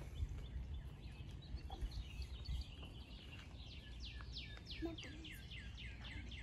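A songbird singing a quick run of short falling notes, about four a second, starting about halfway through, over a low steady outdoor rumble.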